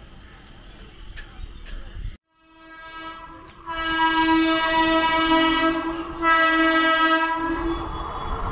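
Electric multiple-unit (EMU) local train sounding its horn in two long blasts as it approaches a level crossing. The first blast swells in from about two and a half seconds in and is loud from nearly four seconds. It breaks off briefly at about six seconds, and the second blast stops just before the end.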